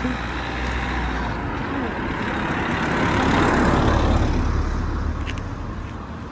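A car driving past on the street, its tyre and engine noise swelling to a peak about three to four seconds in and then fading away.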